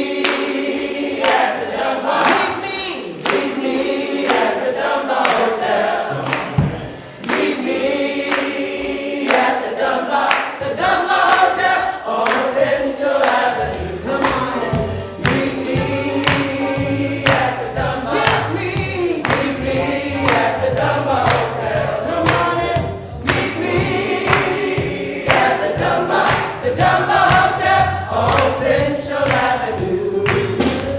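A group of men and women singing together, led by a woman's voice on a microphone, with hand-clapping on the beat. A low bass part joins in about halfway through.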